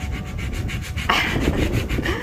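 Hand scrub brush scrubbing stains off a timber beam, the bristles rasping over the wood in repeated strokes, louder from about a second in.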